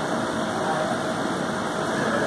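Steady mechanical hum with a faint constant tone, holding an even level throughout.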